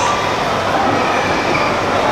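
Steady, loud background din with a faint tone running through it and no distinct event.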